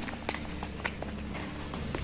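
Low steady background hum with a few soft, scattered clicks or taps.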